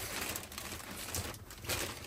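Plastic mailer bag crinkling and rustling as a package is handled and pulled open.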